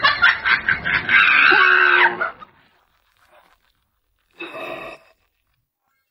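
A man gagging and retching as he spits out a spoiled, sour-tasting duck leg; it lasts about two seconds and stops abruptly. Near the end comes a brief half-second sound effect.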